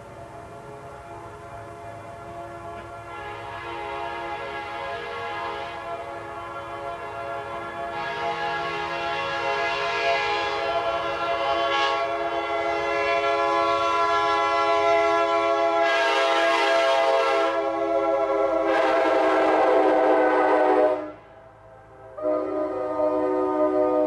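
Nathan K5LA five-chime locomotive air horn, a Holden double-tagged casting, sounding one long steady chord that grows louder as it is held. It cuts off suddenly near the end, then sounds again.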